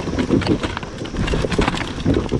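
Enduro dirt bike engine at low revs, pulsing unevenly as the bike crawls over rocks, with irregular knocks from the tyres and chassis on the stones.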